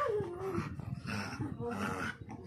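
A dog whining, one pitch falling early on, as it tugs and pulls on a leash in play, followed by further short vocal sounds.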